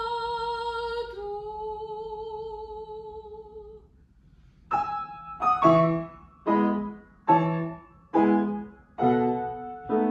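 A soprano voice holds a note with vibrato, steps down in pitch about a second in, and fades out near four seconds. After a short pause, a grand piano plays repeated detached chords, about one every 0.8 seconds.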